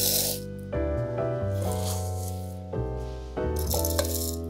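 Rolled oats tipped off a spoon into an empty plastic chopper bowl, rattling in two short bursts, one at the start and one near the end, over background music of slow held chords.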